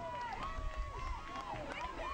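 Faint, overlapping shouts and calls from field hockey players and spectators on the field, over a low wind rumble on the microphone.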